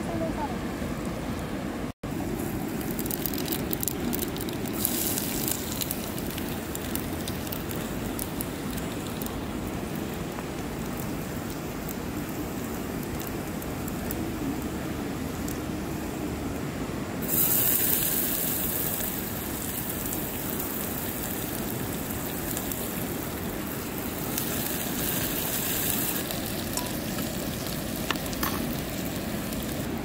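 Oil sizzling and frying in an open pressure cooker on a camping gas stove, the first step of cooking dal. It gets louder for a stretch a little past halfway through.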